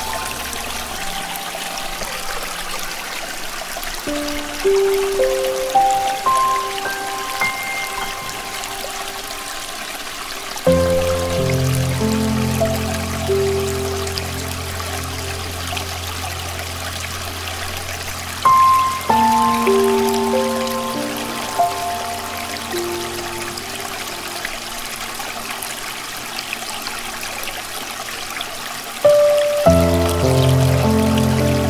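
Slow solo piano playing sustained, decaying notes and chords over a steady wash of running stream water. Fuller chords with deep bass notes come in about a third of the way through, again around two-thirds, and once more near the end.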